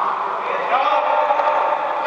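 A man's long, held excited "ooh" shout, starting about a second in after a short stretch of noisy shouting.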